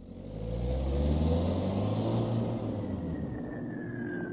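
A low, steady engine-like rumble fading in, with a faint tone that slowly falls in pitch toward the end, like a distant siren winding down.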